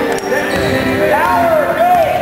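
A basketball being dribbled on a hardwood gym floor, with a sharp knock just after the start, under spectators' voices and calls in a large gym.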